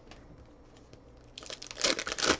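A trading-card pack's wrapper crinkling and tearing as it is ripped open by hand, in a burst of sharp crackles starting about a second and a half in; before that only faint handling of the cards.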